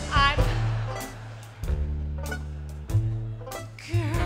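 A live orchestra playing a short swing-style instrumental break in a show tune: held chords over bass notes, punctuated by drum hits about two-thirds of a second apart. A brief sung note sounds at the very start.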